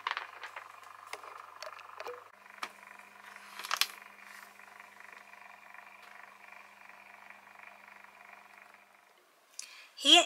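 Minc foil applicator's motor-driven heated rollers running as a plastic transfer sleeve with toner foil feeds through: a faint steady whir with a low hum underneath, and a few light crinkles and ticks from the sleeve in the first four seconds. The running stops about nine seconds in.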